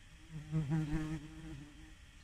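A flying insect buzzes close past, a single low wing buzz that swells, wavers slightly in pitch and fades within about a second and a half.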